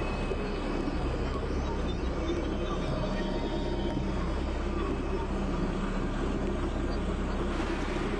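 Experimental electronic drone-noise music: a dense, steady, rumbling wash with low sustained tones underneath, unchanging in loudness.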